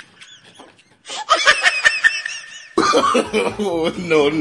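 A person laughing in high-pitched, repeated bursts, starting about a second in. Near the end the sound changes abruptly to a fuller-sounding voice.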